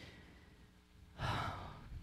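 A woman's single long breath close to a microphone, starting about a second in and lasting about a second, over a faint steady hum.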